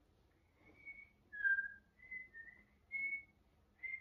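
Someone whistling a short, wandering tune of about five or six separate held notes, the lowest and loudest note about a second and a half in.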